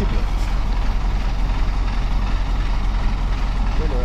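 Heavy dump truck's diesel engine idling steadily close by, a constant low rumble.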